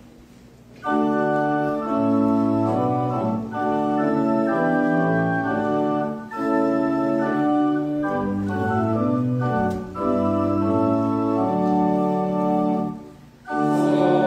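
Church organ playing the hymn tune as the introduction to a congregational hymn, in sustained chords phrased with short breaks, and stopping shortly before the end.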